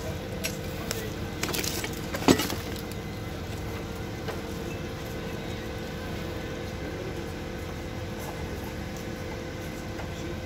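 Metal clinks and scraping as a long metal bar prods and pries at burnt debris in a fire-gutted car engine bay, with one sharp metallic clank about two seconds in. A steady hum runs underneath.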